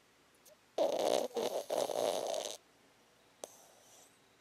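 A sleeping pug snoring: one long snore starting about a second in and lasting just under two seconds, with a brief break partway through.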